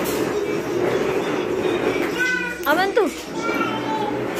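A young child's high voice vocalising, with a quick falling squeal just before three seconds in.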